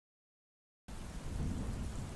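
Rain with a low rumble of thunder, cutting in suddenly out of complete silence just under a second in and then holding steady.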